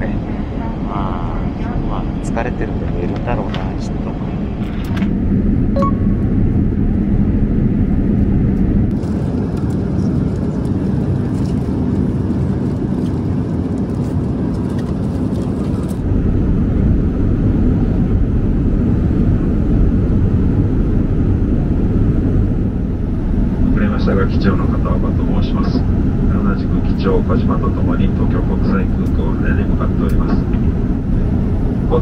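Steady low rumble of a Boeing 787-8 airliner's cabin in flight, its engine and airflow noise heard from inside the cabin. The rumble shifts abruptly a few times, at about 5, 9 and 16 seconds in.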